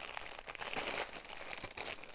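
A clear plastic bag holding small packets of diamond painting drills crinkling irregularly as it is handled and turned over.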